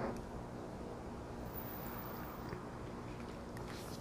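Quiet room tone: a faint, steady hum with no distinct events.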